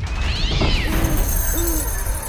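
A cat's meow, one high call that rises and falls, over a steady low rumbling drone, followed by two short low owl hoots.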